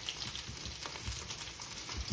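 Cornstarch-coated thin-sliced ribeye frying in oil in a nonstick pan: a steady sizzle with fine crackling.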